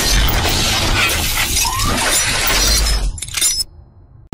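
Cinematic logo-intro sound design: a dense shattering, crackling noise layered over a deep bass rumble, with a few short rising glides. It ends in a last burst and drops away about three and a half seconds in.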